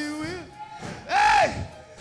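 A man singing gospel into a microphone. A held note ends just under half a second in, then comes a loud, higher, arching sung cry about a second in.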